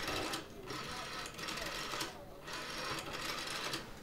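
Black rotary telephone being dialled: the dial is turned and runs back with a rapid whirring clicking, in about three runs with short pauses between.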